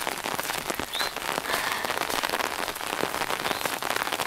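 Pouring rain falling steadily: a dense, even hiss of many small drop impacts close to the microphone.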